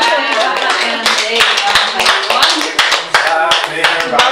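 A small audience applauding, many quick irregular claps, with voices talking over the clapping as a talk ends.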